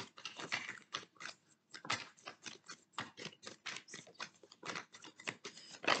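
A deck of oracle cards being shuffled by hand, a quick, irregular run of soft card-on-card slaps and flicks.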